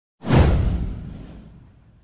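A swoosh sound effect for an animated news intro: one sudden whoosh with a deep low boom under it, sweeping down in pitch and fading away over about a second and a half.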